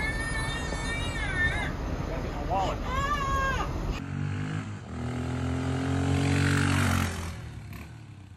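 A baby crying, high-pitched wails played through a speaker, for about the first half. Then, after a cut, a Honda XR dual-sport motorcycle's single-cylinder engine running as it rides off, loudest about three seconds in after the cut and fading away over the last second.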